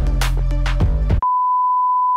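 Upbeat intro music with a beat cuts off about a second in. A single steady, high test-card beep, the tone that goes with TV colour bars, takes its place.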